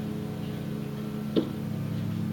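Steady low hum in the room, with a single sharp click about one and a half seconds in.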